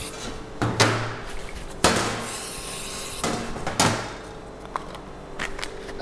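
Aerosol fat spray hissing in short bursts onto metal baking trays. The trays knock and clatter several times as they are handled and set down on a stainless steel worktop.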